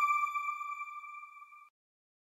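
The last note of an outro jingle: a bell-like chime tone ringing on and fading away, gone less than two seconds in.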